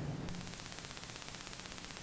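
Low steady hiss with a faint hum: the room tone of a lecture recording, with no distinct sound event.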